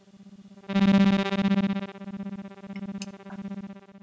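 Lyrebird Reaktor synth playing a single repeated note about twice a second. The notes are retriggered by an external gate, each swelling and dying with its attack-and-decay envelope. One brighter, louder note comes about a second in, and the notes grow quieter toward the end.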